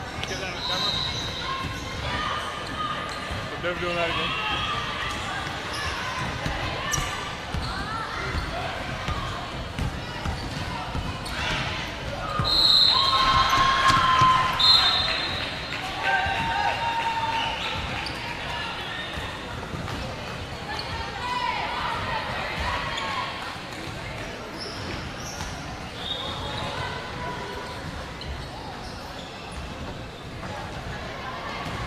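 Basketballs bouncing on a hardwood court in a large indoor stadium, over the chatter of players and spectators.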